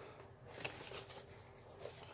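Faint rustling and a few light taps of a cardboard box being handled and moved.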